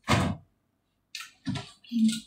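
Kitchen handling noises: a short loud burst right at the start, then a few softer knocks and rustles in the second half.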